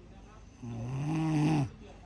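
A woman snoring in her sleep: one pitched snore lasting about a second, starting partway in and dropping off at the end.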